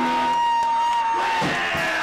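Live garage rock band: one long high note held steady, which bends down and gives way to other notes about a second and a half in.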